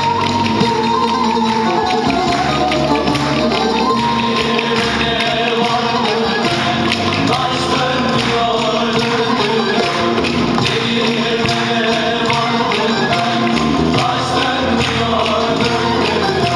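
Live Turkish folk dance tune played by a bağlama (saz) ensemble, with the steady, fast clacking of wooden spoons (kaşık) clicked in time by the dancers.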